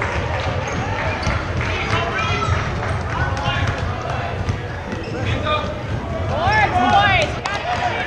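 A basketball bouncing on a hardwood gym floor, with sneakers squeaking and indistinct voices of players and spectators. A burst of squeaks comes near the end.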